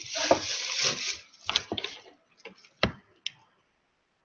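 Rustling and crinkling of a plastic drop sheet, then a few separate light clicks and knocks as small objects are picked up and set down on it, cutting off suddenly near the end.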